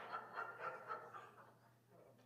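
Faint voices and movement in the hall, dying away to quiet room tone after about a second and a half.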